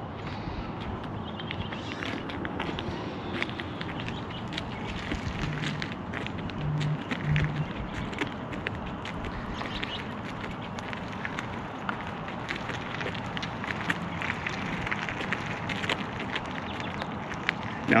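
Steady outdoor background noise with light, scattered footsteps on asphalt.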